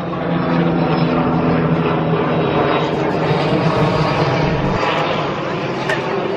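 A steady low engine drone with a constant pitch, weakening about five seconds in, over faint background voices.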